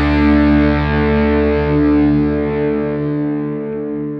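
Distorted electric guitar chord through a Kemper amp profiler, sustaining as one held chord and slowly fading away toward the end.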